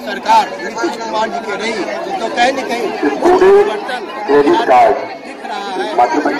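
Speech: a man talking, with chatter from other voices around him.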